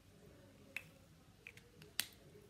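Four faint, sharp clicks spread over two seconds, the last the loudest, from drawing supplies such as markers and stencils being handled on the table.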